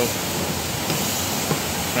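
Steady rushing hiss of the car wash bay's background noise, with a faint click about one and a half seconds in as the coin-op wash selector dial is turned.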